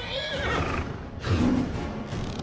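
A horse whinnying once, a call that rises and falls through the first second, over music. A louder low sound follows about a second and a half in.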